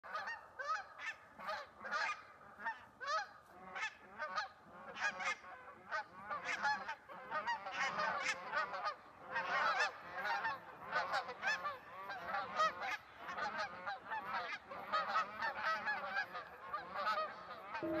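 A flock of geese honking as they fly overhead. The calls start out separate, about two a second, then build into a dense chorus of overlapping honks in the middle and thin out a little toward the end.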